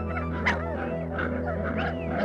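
Dingo pups yelping and whimpering in quick, short cries that rise and fall, several a second, over background music with long held low notes. A sharp click about half a second in is the loudest moment.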